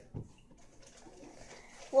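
A pause in the talk: quiet room with faint low sounds, then a girl's voice starts up loudly right at the end.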